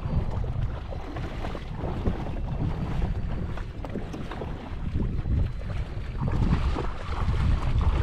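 Wind buffeting the microphone in a steady low rumble, with light splashing as a person wades through shallow water towing a kayak.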